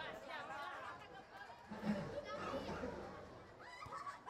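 Field-side voices at a youth football match: several high-pitched children's and spectators' voices shouting and chattering at once, overlapping, with no single voice standing out.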